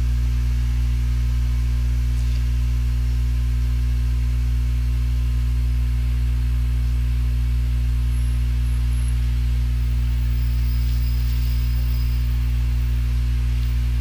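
Steady low electrical mains hum from the recording, an unchanging buzz with no other sound standing out.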